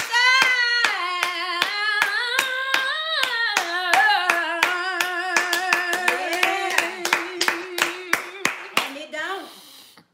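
A woman singing a cappella with hand clapping keeping a steady beat of about three claps a second. The voice holds long, sustained notes, and the singing and clapping trail off near the end.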